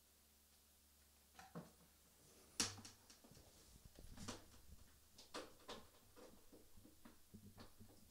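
Near silence over a faint steady hum, broken by scattered knocks and clicks of handling as the microphone on its stand is moved into a new position; the sharpest click comes about two and a half seconds in.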